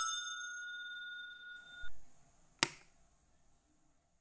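A bright, bell-like chime of several tones ringing and fading out over about two seconds, then a short soft swell and a single sharp click a little past the middle: the sound effects of an animated subscribe button.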